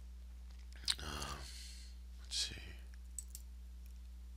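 Faint mouth noises from a narrator between sentences: a click of the lips, a short murmured hesitation sound and a breath, with a small click near the end, over a steady low electrical hum.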